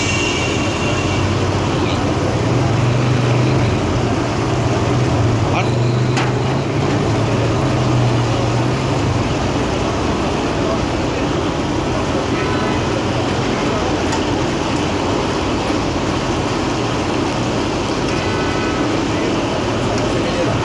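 A large wok of samosas deep-frying in hot oil, a steady sizzle and bubble. A low droning hum runs under it for several seconds in the first half.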